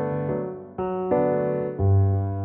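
Piano playing sustained chords of a I–Imaj7–I7 progression in G major, moving from G to G major 7. A new chord is struck about three-quarters of a second in, again just after a second, and once more near the end.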